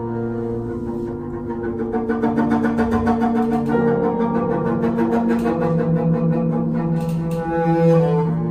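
Improvised duo of grand piano and bowed double bass: the bass holds long bowed notes while the piano plays. From about two seconds in, the playing grows busier and slightly louder, with quick repeated notes.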